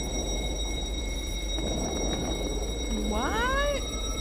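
Music video soundtrack playing: a steady low rumble under thin, steady high tones. Near the end comes a short voiced sound that rises and then falls in pitch.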